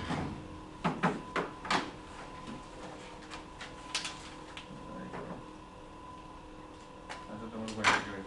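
Light knocks and handling noises of papers and objects on a meeting table: a quick cluster about a second in, one near four seconds and a louder knock near the end, over a steady faint hum.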